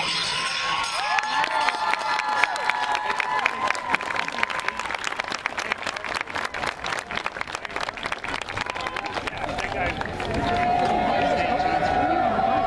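A crowd claps and cheers at the end of a dance routine, with shouting voices over the clapping. The clapping thins out after about ten seconds, leaving voices.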